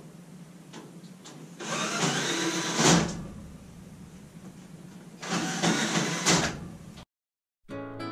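Two bursts of scraping, rasping noise, each about a second long and ending in a sharp knock, as metal parts of a fireplace are worked loose. The sound cuts out abruptly near the end and plucked-string music begins.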